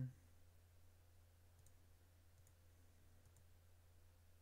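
Near silence with a computer mouse clicking faintly, about three clicks spaced roughly a second apart, over a steady low hum.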